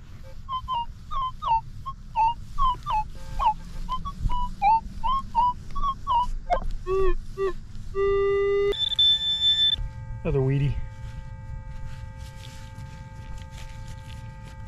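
Minelab E-TRAC metal detector sounding a quick string of short warbling target beeps, about two a second, some lower in pitch near the end, as the coil sweeps over targets. Then a short low tone and a steady held tone lasting about five seconds.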